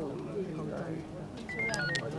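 Indistinct voices of people talking. Near the end comes a short run of high beeps that step up and down in pitch.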